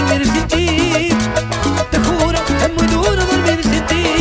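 Cumbia band playing an instrumental passage without singing: an ornamented accordion melody over electric bass, drums and percussion.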